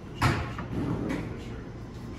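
A single sharp impact about a quarter second in, followed by quieter voices.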